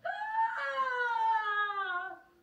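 A person's long, drawn-out terrified scream, one held note that slides slowly down in pitch, given as an acted frightened reaction.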